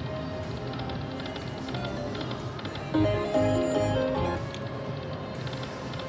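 Slot machine sounds on a casino floor: a steady background din of machines, and about three seconds in a short musical jingle of a few held notes.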